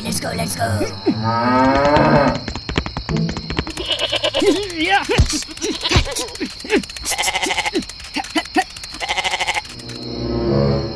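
A cow mooing in the first couple of seconds, then a goat bleating several times in the second half, in short quavering calls.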